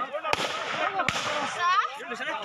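Men shouting in agitation with two sharp gunshots about three-quarters of a second apart; near the end one voice rises into a high cry.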